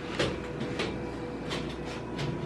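Faint handling noise: soft rustles and light knocks as a handheld camera is moved and a tripod with a measurement microphone is set on the floor in front of the subwoofers, over a faint steady hum.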